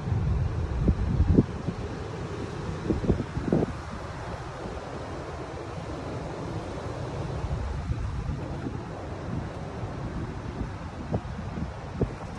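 Strong wind buffeting the microphone as a steady low rumble, over the wash of surf on a pebble beach, with a few short thumps in the first few seconds.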